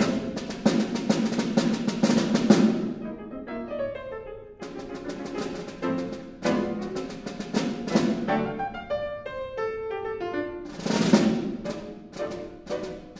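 Snare drum and grand piano duo. The snare plays runs of rapid stick strokes with the snares buzzing. In two short gaps, around four seconds in and again around nine seconds in, the piano plays short phrases on its own.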